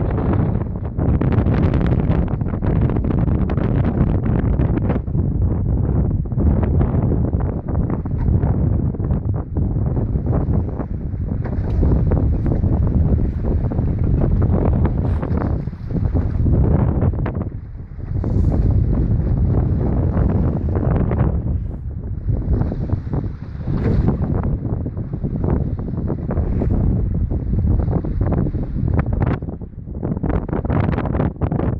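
Strong gale-force wind buffeting the microphone: a loud low rumbling roar that surges and eases in gusts every second or two.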